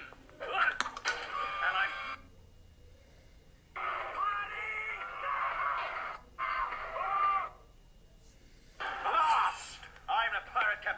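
Character voices from an animated pirate cartoon playing through a tablet's small speaker, in several expressive bursts separated by short pauses.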